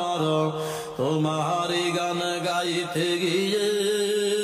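A man singing a Bangla Islamic gazal in a slow, drawn-out melody, holding long notes, with a short break about a second in.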